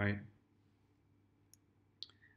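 Near silence after a spoken "right?", with a single faint click about one and a half seconds in.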